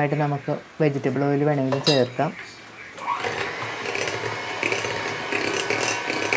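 An electric hand mixer with twin wire beaters switches on about halfway through, after a few spoken words, and runs steadily, beating butter into a whisked egg-and-sugar cake batter.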